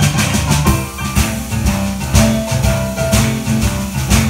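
Live boogie-woogie played on Kawai digital stage pianos with a drum kit, a repeating low bass figure under the piano lines and a steady beat.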